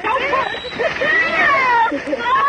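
Several human voices crying out without words, overlapping, their pitch sliding up and down, with one long call falling in pitch in the second half.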